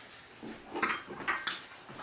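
Porcelain teacups and saucers clinking as they are handled, a few sharp ringing knocks about a second apart.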